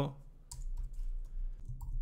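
Computer keyboard keys clicking as a few characters of code are typed: a handful of separate keystrokes, with a faint low hum underneath.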